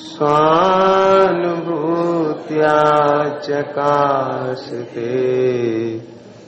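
A man's single voice chanting a Jain devotional invocation in long, drawn-out notes, in several phrases with short breaks between them.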